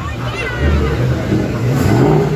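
A Ford Mustang's engine rumbles at low revs as the car pulls slowly away, with people's voices over it.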